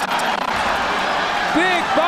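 Arena crowd noise from a live boxing match, a steady roar of spectators. A male commentator's voice comes in near the end.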